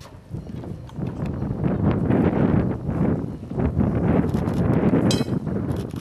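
Wind buffeting the microphone: a rumbling rush that rises and falls unevenly, with a brief high-pitched sound about five seconds in.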